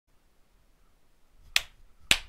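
A single sharp snap about one and a half seconds in, after near silence.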